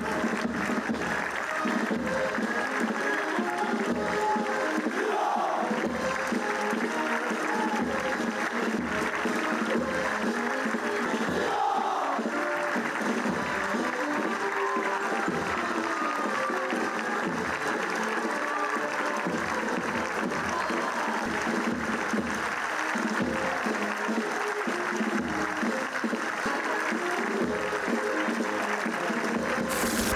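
A military band playing a march.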